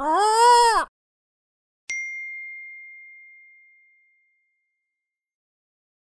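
Logo sting: a short animal-like call that rises and falls in pitch, ending just under a second in, then a single clear bell-like ding about two seconds in that rings out and fades over about two seconds.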